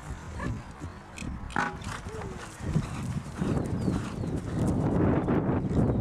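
Horse's hooves on grass turf as it lands over a show jump and canters on, the hoofbeats growing louder in the second half.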